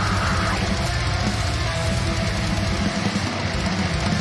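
Brutal death metal song playing: fast, dense drumming under heavy distorted guitars, with a held high note that breaks off about half a second in.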